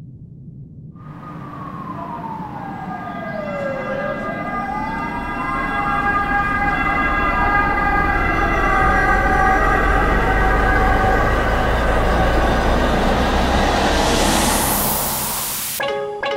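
Song-intro sound design: a siren-like wail slides slowly down, back up and down again over held, layered tones and a deep rumble, all swelling louder. Near the end a rising whoosh builds, and it cuts off as the beat comes in.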